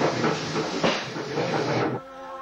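Train noise: a loud hiss with two sharp clacks about a second apart, stopping abruptly near the end.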